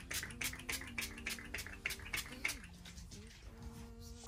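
Small pump bottle of makeup setting spray misted at a face in a rapid run of short hissing spritzes, about four a second, stopping about two and a half seconds in. Faint background music runs underneath.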